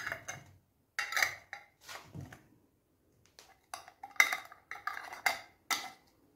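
Metal twist-off lids being screwed onto glass jars of hot jam: a run of short clicks and scrapes of metal on glass threads, in clusters with short pauses between, the busiest near the end.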